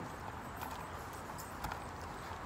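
Faint background noise with a couple of soft, short clicks, in a short gap between speech.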